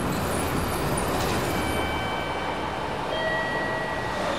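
Steady city ambience: an even low rumble of distant traffic. A few thin steady high tones come in about halfway through and shift to other pitches near the end.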